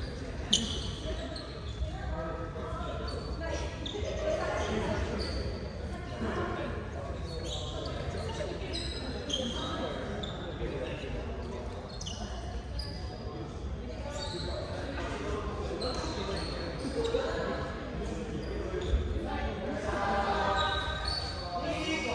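Busy sports-hall ambience in a large echoing hall: voices and chatter, balls bouncing and being struck on the wooden court with a few sharp knocks, and many short, high squeaks scattered throughout, typical of sports shoes on the floor.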